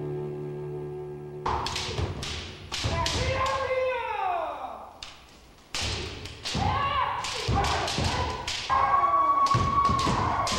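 Kendo practice on a wooden dojo floor: repeated sharp impacts of bamboo shinai strikes and stamping feet, with kendoka's kiai shouts that fall in pitch, one held long near the end. Music fades out just before the practice sounds begin, and there is a brief lull midway.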